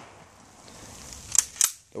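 The last of a gunshot's echo dies away, then two short sharp clicks follow a quarter second apart about a second and a half in.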